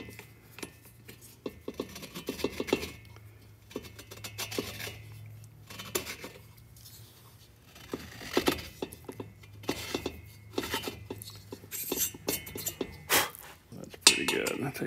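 Hand-turned Neway valve seat cutter working the 30-degree top cut of a VW cylinder head's valve seat: irregular metallic scraping and light clicks as the blades shave the seat, with a clink near the end as the cutter comes off its pilot.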